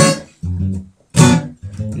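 Acoustic guitar strummed with chords cut short: one sharp strum at the start, another about a second later, then a few lighter quick strokes near the end as the singing comes back in. Played in a bathroom chosen for its acoustics.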